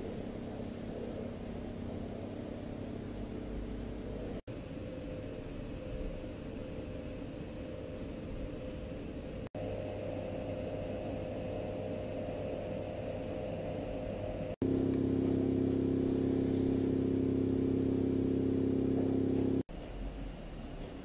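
A steady low hum with a few held tones that changes in pitch and loudness at each cut, about every five seconds, dropping out for an instant at every change. It is loudest and most tonal over the last five seconds.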